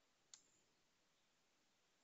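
Near silence, broken once by a single computer mouse click about a third of a second in.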